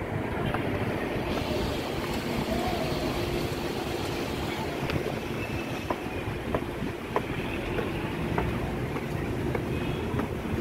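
Road traffic on a city street: a steady low rumble of passing and idling vehicles with a faint engine hum, and a few short sharp clicks in the middle.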